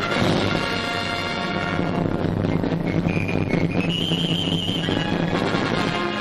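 Orchestral film score with brass, loud and dense, with a high note that steps up and is held for a second or so near the middle.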